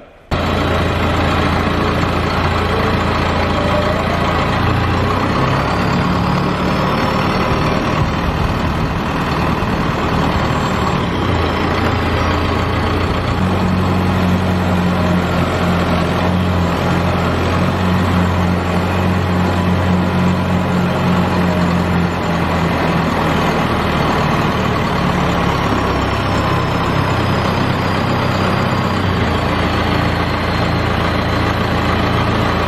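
Loader tractor's engine running steadily, its note shifting partway through. A faint high whine rises and falls twice.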